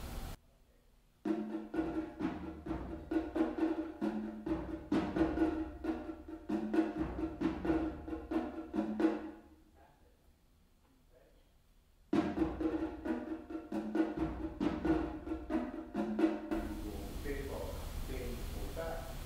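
Drums struck with sticks in a quick rhythmic pattern on two pitched drums, one higher and one lower. The pattern stops about nine and a half seconds in, pauses briefly in near silence, then starts again and stops near the end.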